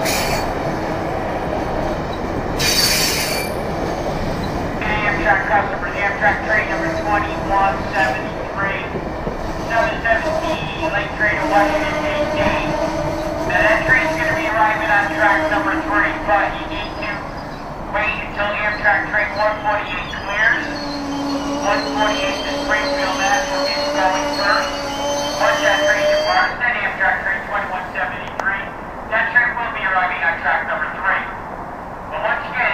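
Amtrak Amfleet passenger cars rolling past and slowing to a stop, their wheels and brakes squealing in several high, wavering tones. There is a short hiss about three seconds in.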